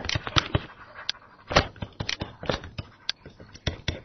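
Stylus clicking and tapping on a tablet computer's screen during handwriting: an irregular run of short, sharp clicks, several a second.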